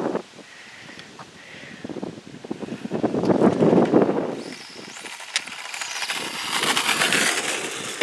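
Radio-controlled pro mod car with a Velineon 3500kV brushless motor driving on asphalt: motor whine and tyre noise. The sound swells about three seconds in, then rises in pitch and builds again toward the end as the car comes close.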